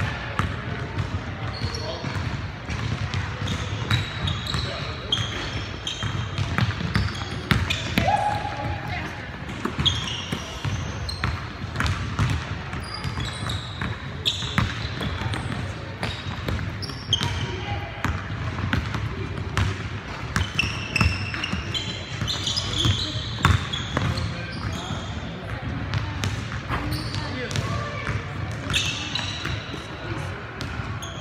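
Pickup basketball on a hardwood gym floor: the ball bouncing and dribbling in repeated sharp knocks, sneakers squeaking in short high chirps, and players' voices calling out indistinctly.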